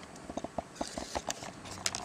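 Handling noises: a string of light clicks and knocks as a silver tankard is taken out of a cardboard box and set down on a wooden table.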